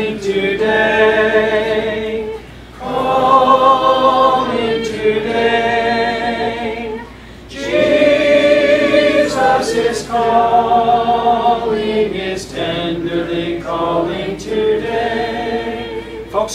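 Congregation singing a slow hymn together in sustained phrases, with short pauses for breath twice.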